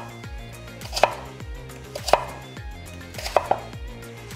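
Kitchen knife slicing through a peeled raw russet potato and knocking on a wooden cutting board: single cuts about once a second, the last two in quick succession near the end.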